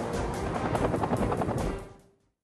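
Helicopter rotors beating with a rapid, even chop that fades out near the end.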